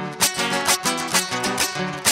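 Strummed string accompaniment of Panamanian décima singing, a guitar-like instrument repeating a quick chord pattern at about three to four strums a second in the instrumental break between sung verses.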